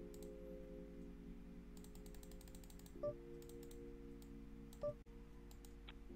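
Light clicking of computer keys in a few short runs over a soft, sustained background chord that changes about halfway through. Two brief, slightly louder blips come near the middle and near the end.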